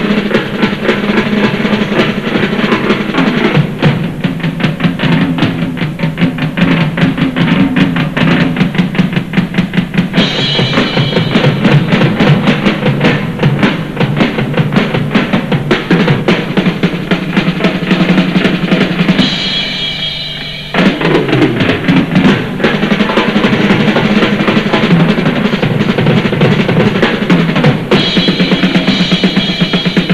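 Drum kit played fast in a drum battle: a dense run of rapid strokes on drums and cymbals. The playing thins out briefly about twenty seconds in, then picks up again at full pace.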